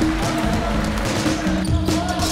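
Background music with held notes that step in pitch, over game sound: a basketball bouncing on a hardwood court, with a few sharp knocks.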